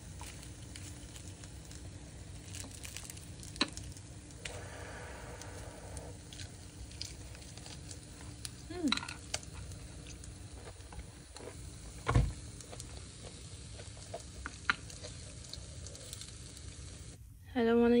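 Quiet eating at a counter: a few faint clicks and taps of chopsticks against a ceramic plate over a steady low hiss, with one louder soft knock about twelve seconds in.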